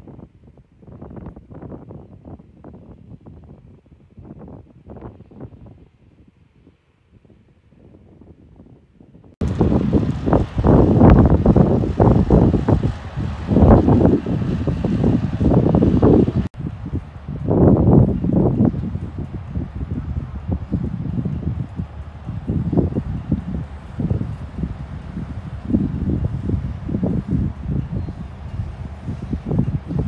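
Wind buffeting the microphone in irregular gusts. It is fainter for the first nine seconds or so, then jumps sharply louder and stays gusty.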